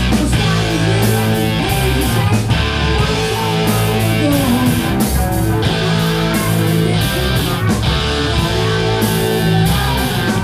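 Live rock band playing at full volume, with electric guitars, bass, keyboard and a drum kit with steady cymbal and snare hits. A man is singing into a handheld microphone over the band.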